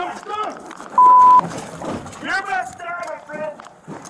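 Overlapping voices from several body cameras, cut through about a second in by a single loud, steady beep lasting under half a second, a censor bleep laid over the audio.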